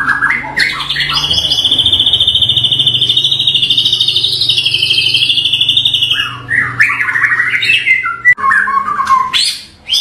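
Bahorok-strain white-rumped shama (murai batu) singing loudly: a long, fast trill held at one pitch for about five seconds, then varied whistled phrases that slide down and up.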